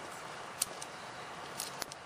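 A few short plastic clicks and ticks from hands fastening a zip tie around the tail-light ground wire and handling the bulb socket, over a steady faint hiss.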